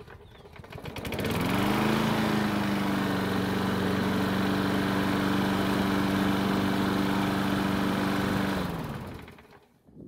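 Walk-behind lawn mower's small engine restarted while hot: it catches about a second in, rises to a steady run at a lowered governed speed, then winds down in pitch and stops near the end as the blade-brake handle is released.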